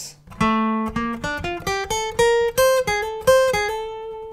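Steel-string acoustic guitar playing a picked single-note phrase: about a dozen notes climbing in pitch, the last one left to ring.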